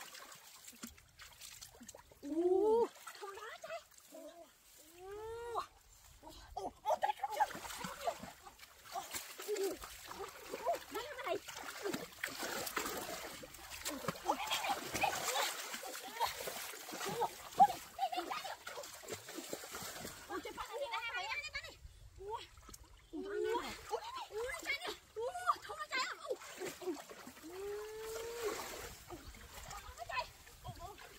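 Shallow stream water splashing and sloshing as hands grab at a fish in it, heaviest in the middle. Short voiced exclamations break in now and then, mostly near the start and near the end.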